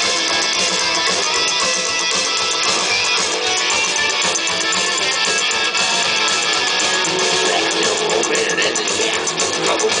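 Psychobilly band playing loud and live, with electric guitar, upright double bass and drums in a dense, unbroken wall of sound.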